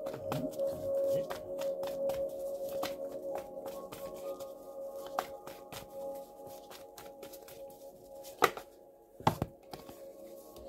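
Background music of steady held tones, over the soft clicks and rustle of a tarot deck being shuffled and handled. Two sharper clicks come about a second apart near the end.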